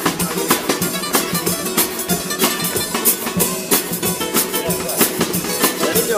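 Carnival comparsa band playing an instrumental passage: Spanish guitars strummed over a steady drum beat of about two strokes a second.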